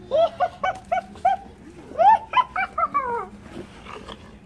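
A child's high-pitched yelps during rough play. There are about five short quick cries, then a second run of cries that rise and fall in pitch.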